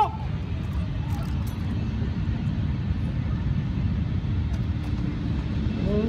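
Low rumble of a jet aircraft, growing slowly louder.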